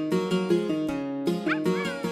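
Cheerful instrumental children's music with a run of plucked notes, ukulele-like. About one and a half seconds in, a short high squeaky sound sweeps up and then arches down in pitch.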